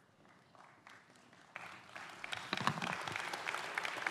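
Audience applause, faint at first and building to steady clapping from about one and a half seconds in.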